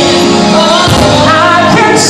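A male vocalist singing live into a microphone over loud music, with backing singers joining in.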